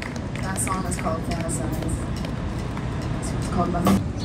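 City street traffic noise, a steady hum of vehicles, with a person's voice early on and a short loud sound just before the end.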